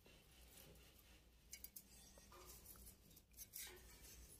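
Near silence, with a few faint, sparse clicks of steel heddle wires and a latch hook being handled as yarn is threaded through the heddle eyes.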